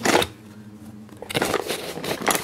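Cardboard box and small plastic toy show-jumping pieces being handled and pulled out: a short rustle at the start, a brief lull, then steady rustling with light plastic clicks from about a second and a half in.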